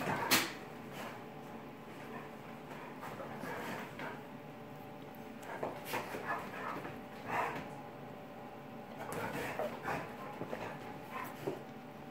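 Two dogs play-fighting, with short scattered dog noises. The loudest is a sharp one just after the start.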